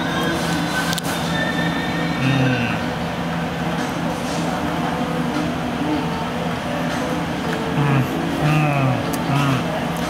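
Indistinct voices murmuring in a busy café over a steady low hum, with a short stretch of voice near the end.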